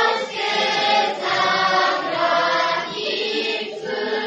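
Children's choir singing together, phrase after phrase, with brief breaks between phrases.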